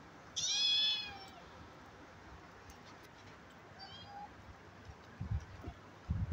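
Kitten meowing: one loud, high meow that rises and falls about half a second in, then a fainter short mew around four seconds. A few low thumps follow near the end.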